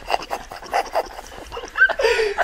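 People laughing hard: breathless, wheezing bursts of laughter a few times a second, with a short high-pitched squeal near the end.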